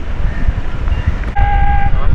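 Wind rumbling on the microphone on an open parade ground. About one and a half seconds in, a single steady pitched note sounds for about half a second, starting with a sharp click.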